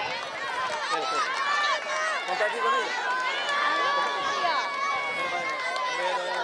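Crowd of schoolchildren chattering and calling out all at once, many high voices overlapping, with a long drawn-out call in the second half.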